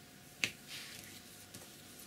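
A single sharp click about half a second in, then a brief soft scratchy swish as a flat paintbrush is worked through paint on a paper palette.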